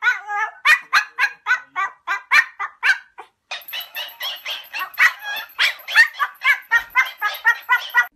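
Small white Pomeranian barking: a rapid run of short, high-pitched yaps, about three or four a second, with a brief pause a little over three seconds in.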